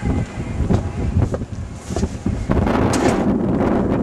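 Wind buffeting the microphone: an uneven low rumble with scattered knocks, growing louder and denser about halfway through.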